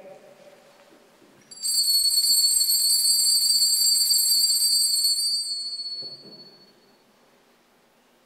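Altar bells shaken in a steady jingle for about three and a half seconds, then fading out, rung at the elevation of the consecrated host.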